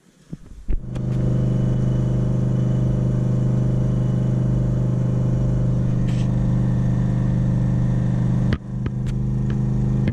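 Cammed 5.3-litre LS V8 with custom exhaust in a Chevy S10 pickup, heard from inside the cab while driving: a steady low drone at an even engine speed. A click sets it off about half a second in, and it breaks off briefly about eight and a half seconds in.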